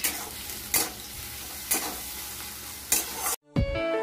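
Sliced green capsicum sizzling in hot oil in a steel wok, with a metal spatula scraping and knocking against the pan four times as it is stirred. Near the end the frying cuts off and music with a beat starts.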